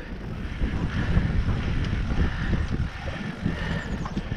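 Wind buffeting the microphone of a GoPro on a downhill e-bike, over the irregular low rumble of tyres rolling fast down a dirt singletrack.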